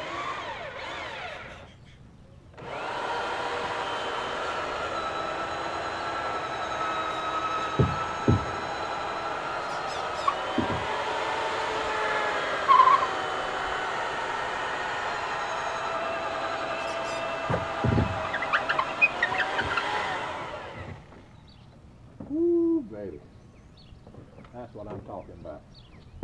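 Corded electric drill running steadily for about eighteen seconds as a long bit bores through a wooden dock piling, its motor pitch wavering slightly under load. A few sharp knocks come along the way, and the drill stops a few seconds before the end.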